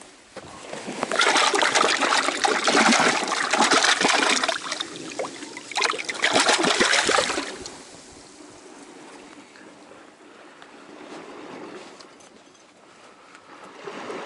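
A landed little tunny thrashing in a shallow rock pool, splashing loudly in two bursts, the first of about four seconds and a shorter one after a second's pause, then water trickling quietly among the rocks.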